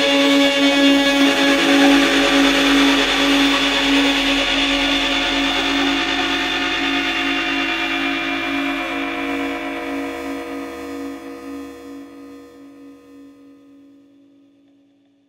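The end of a post-rock band's track: a dense, sustained wash of sound over a held note that pulses steadily, fading out over the last four seconds or so.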